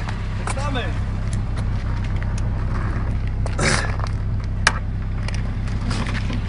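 Car engine idling steadily, heard close to the tailpipe, with brief voices and a sharp click partway through.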